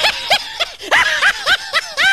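A rapid snickering laugh: short, rising-and-falling wheezy notes, about five a second, starting as the music cuts off.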